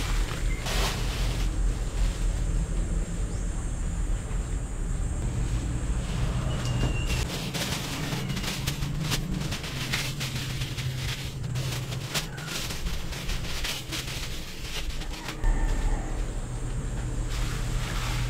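Thin plastic grocery bags crinkling and rustling as they are handled, emptied and twisted up, in many short crackles, over a steady low rumble.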